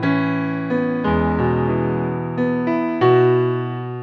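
Song intro on an electric keyboard: sustained chords, a new chord struck every half second to a second, each fading away.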